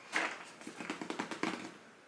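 A cardboard jigsaw puzzle box being tilted and turned in the hands, the loose pieces inside sliding and rattling in a quick patter of small clicks that dies away near the end.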